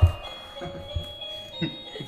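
A tinny electronic Christmas tune of held high notes that shift in pitch now and then, played by a battery-powered musical Christmas decoration.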